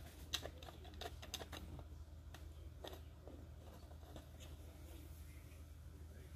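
Faint, scattered light metal clicks from a long screwdriver working the stock-bolt nut down inside a shotgun's wooden buttstock as the stock is refitted. The clicks are most frequent in the first half, over a low steady hum.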